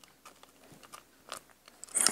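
Faint crackle and a few small ticks of paper pages being handled in a spiral-bound recipe booklet.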